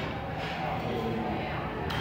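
Steady restaurant background noise: a low murmur of distant voices in a large room.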